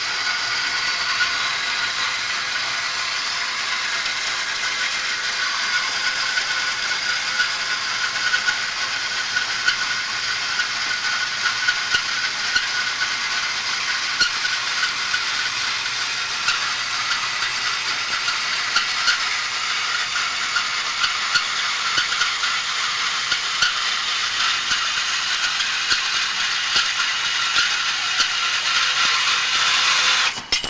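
Homemade belt-driven horizontal metal-cutting bandsaw running: a steady mechanical whirr with a faint whine and a constant light rattle of small ticks, which comes thicker after the first several seconds.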